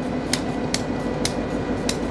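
Diesel locomotive rolling slowly past at close range: a steady low engine rumble with sharp metallic clicks about twice a second from its wheels and running gear on the track.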